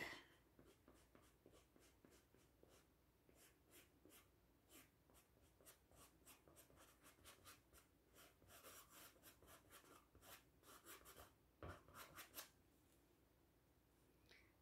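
Faint brush strokes on stretched canvas: a small paintbrush dabbing and dragging paint in short, soft scratchy strokes, a little louder and busier for a few seconds towards the end, then stopping.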